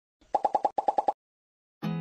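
Edited-in cartoon pop sound effect: a quick run of about eight short, pitched pops in two groups of four, over in under a second. Music starts just before the end.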